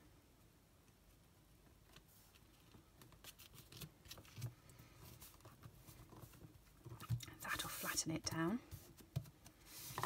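Faint rustling and light taps of hands pressing card stock flat on a craft mat, getting busier about seven seconds in. Near the end there is a brief wordless murmur from a voice.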